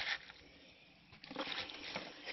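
Hands rustling through wet, decomposed worm-bin compost and shredded paper bedding: a short burst at the start, a pause, then more rustling over the last second or so.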